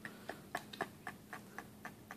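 Faint, irregular little clicks, about four or five a second, of a toddler eating chocolate pudding with a metal spoon from a small plastic cup.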